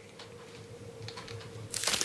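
Quiet room tone with a faint steady hum, then near the end a short burst of dense crackling clicks, like something being crumpled or handled.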